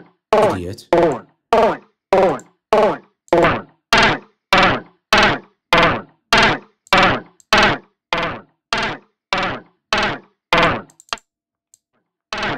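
A short chopped snippet of a spoken 'I better get going' voice sample, retriggered by the Hammerhead Rhythm Station drum-machine app on every beat, about one and a half stabs a second, each cut off abruptly. The stabs stop briefly near the end, then start again.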